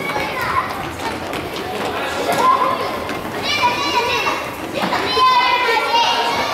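Young children shouting and calling out during an indoor soccer game in a gymnasium, with two long, high-pitched calls in the middle and near the end and a few sharp knocks at the start.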